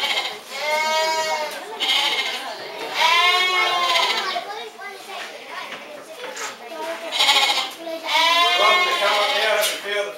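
Sheep bleating: three long, wavering bleats, about a second in, about three seconds in, and near the end.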